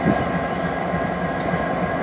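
A consist of Union Pacific diesel-electric freight locomotives passing slowly, their diesel engines running with a steady drone and a thin whine over it. A single sharp click comes about three-quarters of the way through.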